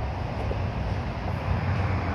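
Steady low rumble with an even hiss of outdoor background noise, no distinct events.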